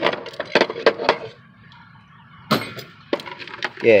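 Small hard parts clicking and clinking together as they are handled and rummaged through in a parts tray. There is a quick run of clicks, a short lull, then a few sharper single clicks.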